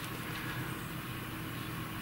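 Quiet, steady room tone with a faint low hum and no distinct sounds.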